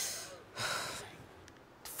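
A person breathing out heavily, two hissy breaths one right after the other, like a sigh.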